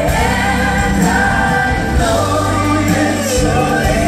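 Live pop music: several voices singing together in harmony over a band with keyboards and bass.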